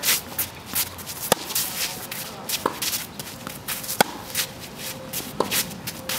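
Tennis rally: a ball struck by rackets four times, evenly about a second and a third apart, each hit a sharp ringing pop. Between the shots, tennis shoes scuff and slide on the gritty surface of a clay court.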